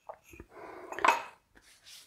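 A couple of light clicks, then a short scrape and clatter about a second in: a small dish or pot being handled and set down on a kitchen worktop.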